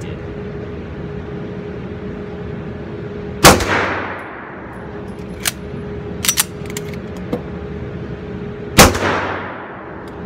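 Two 9mm shots from a Springfield Armory Range Officer 1911 pistol, about five seconds apart, each echoing off the indoor range. The pistol is fired limp-wristed with no magazine in it, a test of the extractor. Between the shots come a few light metallic clicks of the slide being worked.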